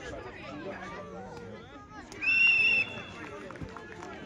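A single short, steady blast of a referee's whistle about two seconds in, over faint chatter from players and spectators.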